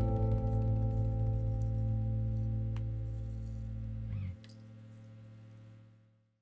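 Final chord of a song on guitars and bass guitar, left ringing and slowly fading. The low bass note stops abruptly about four seconds in, and the higher guitar notes die away near the end.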